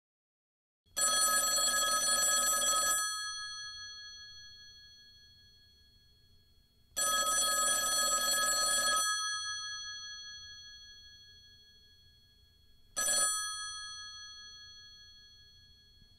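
Telephone bell ringing: two rings of about two seconds each, six seconds apart, then a short third ring that is cut off. Each ring leaves a long fading tail.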